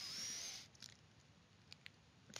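Near silence: a faint hiss for about the first half second, then a few faint clicks.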